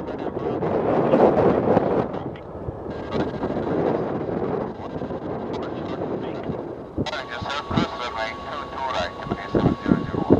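Jet engines of a Boeing 747SP running loud as the airliner rolls out on the runway after touchdown, loudest in the first couple of seconds and easing after, with wind buffeting the microphone.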